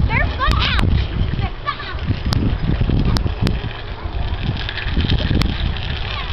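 Children's high-pitched squeals and shouts, short rising and falling cries mostly in the first two seconds, over a steady low rumble of wind on the microphone, with a few sharp clicks.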